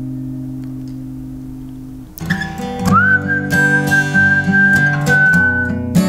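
Acoustic guitar chord ringing out and slowly fading, then strummed guitar starts again about two seconds in. A high whistled melody note slides up and is held for a couple of seconds over the guitar.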